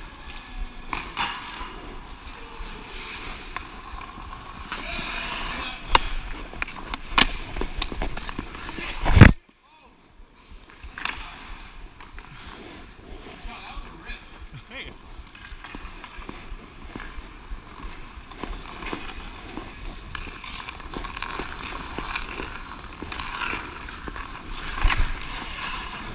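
Hockey skates scraping and carving on rink ice, with scattered sharp clicks of sticks and puck. About nine seconds in there is a loud knock, and the sound drops out for about a second right after it.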